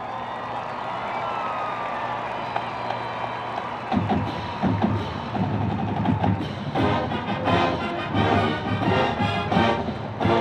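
College marching band playing: a held chord for the first few seconds, then about four seconds in the drums and brass come in with accented, rhythmic chords.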